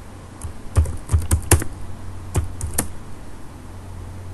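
Computer keyboard being typed on: a quick run of about a dozen sharp keystrokes between about half a second and three seconds in, over a steady low hum.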